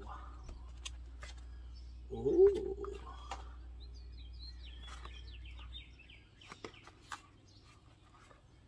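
Cables and plastic connectors being handled in a hard plastic carry case, with scattered light clicks and knocks. A bird chirps a quick run of short notes around the middle, and a brief hum of voice comes about two seconds in.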